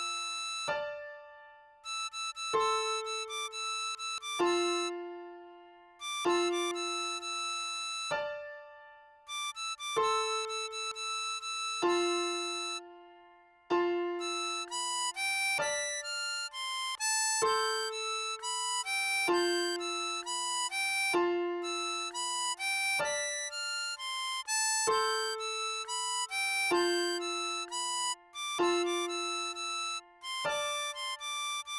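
Diatonic harmonica playing a melody in its high register over low, decaying accompaniment notes that strike about every two seconds. For the first half the melody comes in short phrases with brief pauses between them. From about halfway through it runs on continuously.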